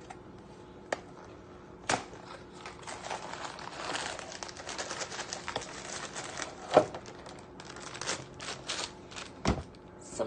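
A cardboard cake-mix box being opened and the plastic bag of mix inside pulled out: irregular paper-and-plastic crinkling and tearing, broken by a few sharp knocks against the counter, the loudest about two-thirds of the way through.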